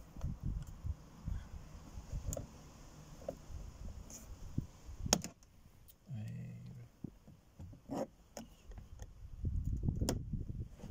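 Plastic interior door trim on a Nissan Qashqai being worked loose with a thin pry tool: rubbing and handling noise with a few sharp plastic clicks, the loudest about five seconds in. A brief low hum follows about a second later.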